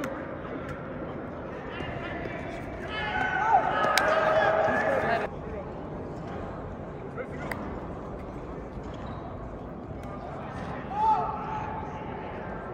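Players' voices calling and shouting without clear words over a low murmur of chatter. The calls are loudest from about three to five seconds in, with a short call again near the end. A couple of sharp clicks come in between.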